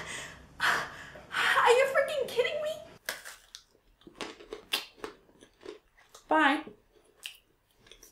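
A slowed-down voice crying out and gasping. Then, from about three seconds in, crunching bites into a hard gingerbread heart and chewing, with one short hummed sound in the middle of the chewing.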